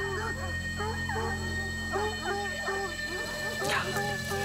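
Tracking dogs baying and yelping in the woods, in short calls that bend up and down in pitch, several a second, over a steady background music score.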